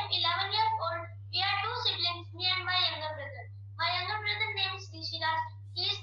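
A child's voice coming through a video call, in stretches with short pauses, over a steady low hum.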